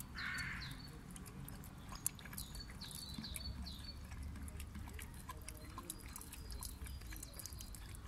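An Akita Inu licking from a man's cupped hand: quiet, irregular wet clicks of its tongue and mouth, with one sharper click about two seconds in. A few short bird chirps sound in the background in the first half.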